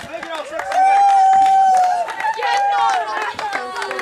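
Young people shouting and yelling over one another, with a long drawn-out high cry from about one to two seconds in, and scattered knocks and claps.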